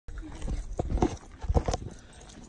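A run of irregular low thumps and knocks in two clusters, the loudest about one and a half seconds in.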